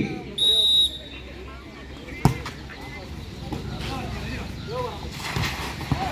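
A referee's whistle blows briefly, a steady high tone about half a second in, signalling the serve. A little over two seconds in comes one sharp slap of a hand serving the volleyball, followed by faint voices of players and onlookers.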